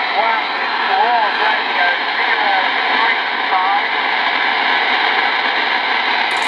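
Long-distance skip signal from an RCI-2980WX radio's speaker: a loud, steady hiss of band noise with a faint distant voice coming through it, the Australian station answering a DX call. The voice fades into the noise after about four seconds, and the hiss cuts off suddenly at the end.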